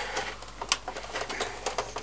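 Plastic casing panels of an Epson R265 inkjet printer clicking and knocking as they are handled and pressed onto their clips: a quick, irregular run of sharp clicks.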